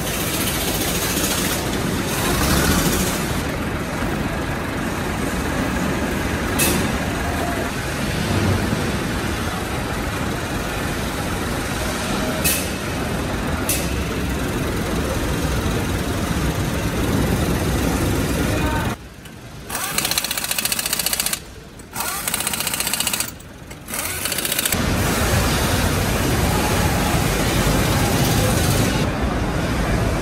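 Tractor assembly-plant floor noise: a steady mechanical din with a hiss of air, broken by a few sharp metallic clicks, and dropping away briefly three times about two-thirds of the way through.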